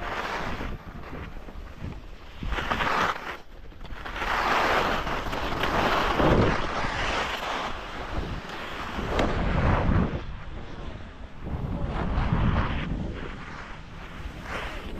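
Skis scraping and hissing over packed snow on a downhill run, swelling and fading every few seconds, with wind buffeting the action camera's microphone.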